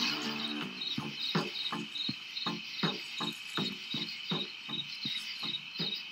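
Night insect chorus: a steady cricket trill with a high chirp pulsing about three times a second, over a regular soft knocking at about the same pace. Music fades out in the first moment.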